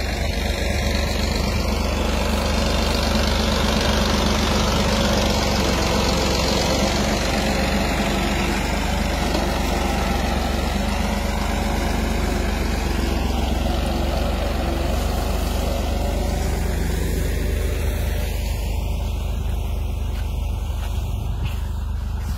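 Tractor diesel engine running steadily under load while pulling a groundnut digger through the soil. It makes a steady low hum with a rougher noise above it, and the higher part of the sound fades in the last few seconds.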